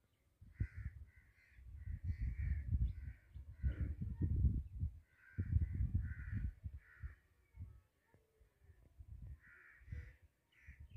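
Crows cawing in a run of short calls, about two a second, pausing a little before the end and then starting again. Under them, gusts of wind buffet the microphone with a low rumble.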